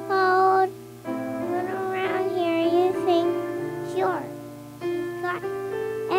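A three-year-old girl singing through a handheld microphone over a sustained instrumental accompaniment, in short phrases with held, wavering notes.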